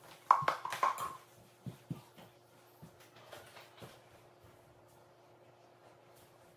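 Faint clicks and taps from a kitchen knife cutting steamed sweet potatoes on a paper-towel-covered counter. They are bunched in the first second or so, then come sparsely, over a faint steady hum.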